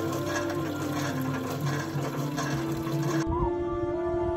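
Water from a hand pump's spout splashing into a clay pot, heard under background music with long, sustained melodic tones. About three seconds in the water sound cuts off and only the music remains.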